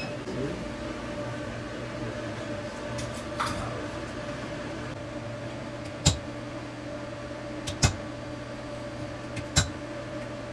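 Three sharp hammer blows on a drift punch held in hot steel on an anvil, each about two seconds apart in the second half, driving the punch through to open the hole of a forged bottle opener. A steady hum runs underneath.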